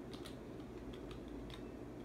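Keystrokes on a computer keyboard: several faint, separate key clicks, a few a second, as a short command is typed in.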